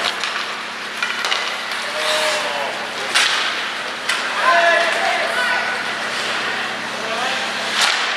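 Ice hockey play: sharp cracks of sticks and puck striking the boards and glass, one about three seconds in and another near the end, with spectators' voices shouting in a large arena.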